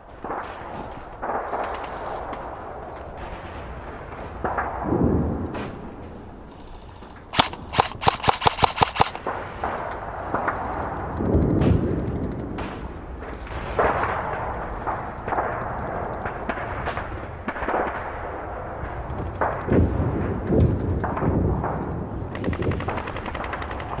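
Airsoft rifle firing a quick string of about eight sharp shots, roughly five a second, about seven seconds in. Rustling and low knocks of movement through undergrowth come before and after.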